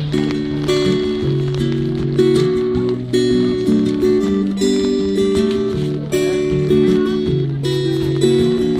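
Live band playing a song's instrumental intro: strummed acoustic guitar chords with bass, keyboard and drums, held chords changing about every second.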